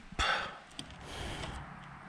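A man's short intake of breath between sentences, a fraction of a second in, then faint steady hiss.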